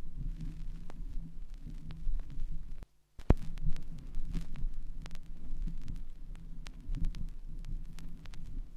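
Vinyl 7-inch single playing through the gap between its tracks: a low hum and rumble with scattered surface clicks and pops. About three seconds in it drops briefly to dead silence, a digital splice, then comes back with a sharp click.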